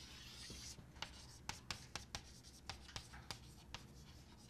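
Chalk on a blackboard: a smooth stroke scraping across the board for under a second, then a quick run of sharp taps and short scratches as a word is chalked out letter by letter.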